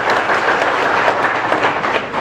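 A crowd applauding steadily, with many hands clapping at once.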